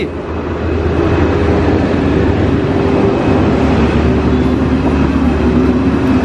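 A loud, steady engine drone with a low hum.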